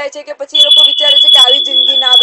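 A steady high-pitched tone, one held note, starting about half a second in and sounding over a woman's speech.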